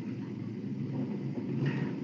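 A pause between spoken lines: faint steady background hiss with a low hum from the voice-chat audio stream, and no distinct event.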